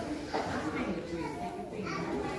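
Young children's voices, indistinct chatter and calling out.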